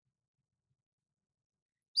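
Near silence, then a woman's voice starts right at the very end.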